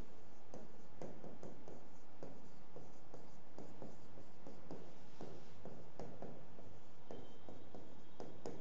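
A pen stylus writing on a glass interactive touchscreen display: a quick, irregular run of taps and short scrapes as words are written out by hand.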